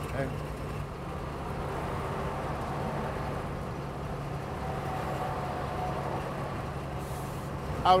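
Diesel engine of a 1970s Mercedes-Benz truck running steadily at cruising speed, heard from inside the cab as a low, even hum with road noise.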